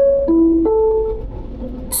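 Three-note PostAuto announcement chime, high, then low, then a longer middle note, in the Swiss post-horn motif. It is the signal that comes before the next stop is announced.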